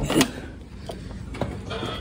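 Handling noise from a phone's microphone as the phone is swung and rubbed against clothing: a loud scrape at the start, then a softer rustle with a single click about one and a half seconds in.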